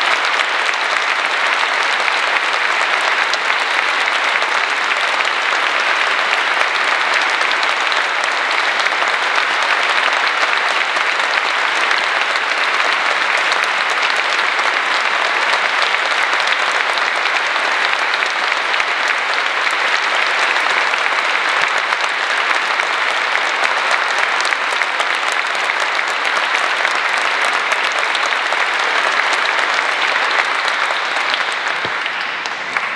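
A church congregation applauding steadily and without a break: the people's assent to the bishop's choice of the candidates for the priesthood.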